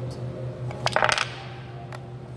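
Painted wooden blocks clacking as a block is set on top of a stacked tower: a quick cluster of knocks about a second in, then a single click near the end.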